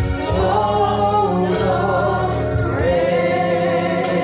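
Gospel song sung by a man and a woman into handheld microphones, with long held notes.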